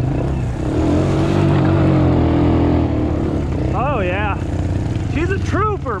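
ATV (quad) engine running under throttle, its note swelling louder about a second in and easing back after three seconds. Near the end a person's voice calls out twice.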